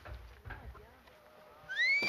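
Faint low rumble, then near the end a single loud, high-pitched call that rises steeply in pitch, a spectator's whoop cheering a snowboard jump.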